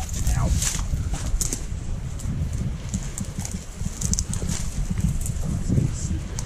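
Footsteps and the scrape of boots and legs pushing through wet scrub and grass tussocks on a steep slope, over a steady low rumble of wind on an action camera's microphone.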